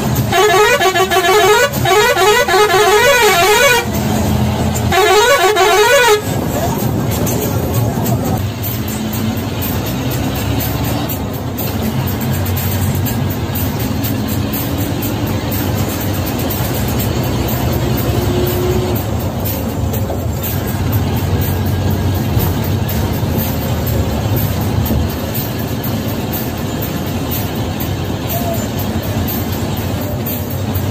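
A bus's musical air horn plays a warbling, up-and-down tune for about four seconds and sounds again briefly around five seconds in. After that, the Ashok Leyland bus's diesel engine and road noise run steadily from inside the cab as it cruises, with the engine note slowly rising for a while.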